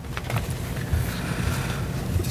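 Low, uneven rumbling with a few light clicks and a soft rustle: papers being shuffled and handled on a conference table, picked up as handling noise by the table microphones.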